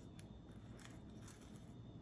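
Near silence, with a few faint small clicks and rustles from the pine-needle coil and thread being handled.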